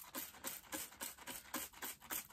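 Hand spray bottle misting water onto a houseplant: a quick run of short, faint hisses, several a second.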